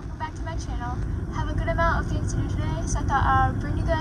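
A girl talking inside a car's cabin over a steady low rumble from the idling car.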